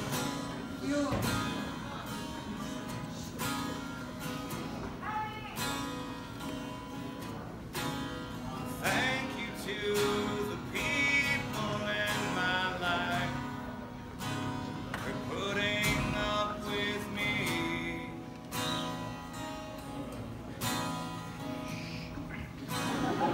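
Solo acoustic guitar strummed steadily while a man sings over it, a live performance.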